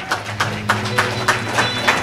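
Scattered hand clapping from a small congregation, irregular claps about five or six a second.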